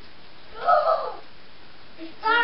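A child's short, hoarse shout, about half a second long, starting about half a second in.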